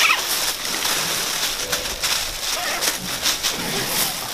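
Rustling and scraping of nylon webbing and a plastic poncho as a litter strap is pulled through its buckle and cinched tight, with a few sharp clicks and faint voices.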